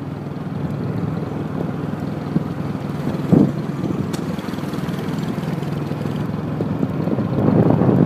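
Motorbike running steadily while riding along a rough dirt road, engine and road noise together, with a brief louder sound about three and a half seconds in.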